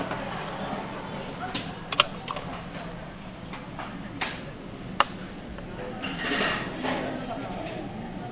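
Sharp plastic clicks and knocks from a conveyor-belt sushi plate being handled and freed from its clear plastic dome cover, the loudest about two seconds in and again about five seconds in. Behind them, a steady murmur of restaurant chatter.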